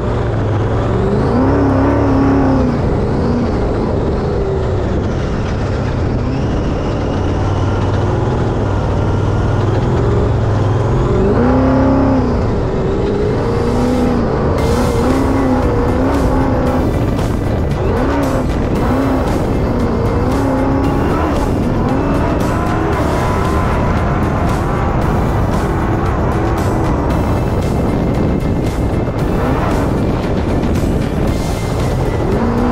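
Off-road Trophy Bug race car's engine running hard as it drives over desert dirt, its pitch rising and falling with the throttle over a steady noise of wind and tyres. From about halfway in, rapid sharp ticks and knocks join in, like grit and stones striking the body.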